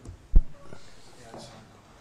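A single low thump on a desk microphone about a third of a second in, followed by faint voices.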